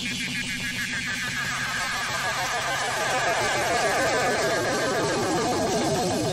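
Electronic synthesizer passage from a 1970s rock recording: a steady low drone under a rapidly warbling tone that slowly sweeps downward in pitch.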